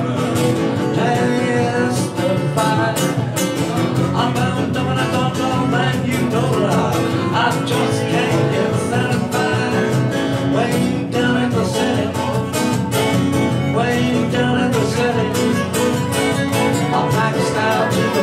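Acoustic guitar strummed in a steady, driving rhythm during a live song.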